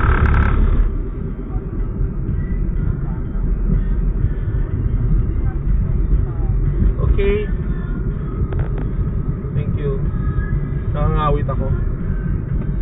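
Car cabin noise while driving: a steady low rumble of engine and tyres on the road. There is a brief louder rush of noise in the first second.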